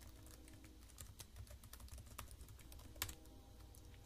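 Faint computer keyboard typing: a run of quick key clicks as a username and password are entered, with one slightly louder key click about three seconds in.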